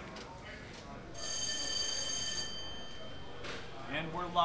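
A loud, steady, high-pitched ringing signal tone starts about a second in and holds for a little over a second. It then breaks off sharply, leaving a brief fading tail.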